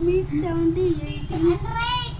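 A young child singing in a high voice, holding and sliding between notes, over a steady low hum.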